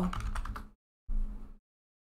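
Computer keyboard typing: a few keystrokes in two short bursts about a second apart, each cut off abruptly.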